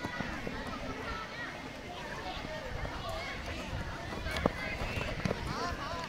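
Many children's voices calling and shouting over one another during a school football match, with a sharp thud, typical of a ball being kicked, about four and a half seconds in.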